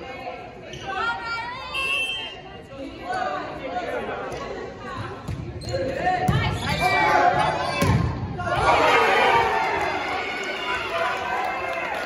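Indoor volleyball rally: sharp smacks of the ball being hit, ringing in the gym hall, the loudest about eight seconds in. Players and spectators shout throughout, and the voices get louder after that last hit as the point ends.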